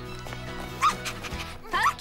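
A cartoon puppy barking in a couple of short, sharp yips over steady background music.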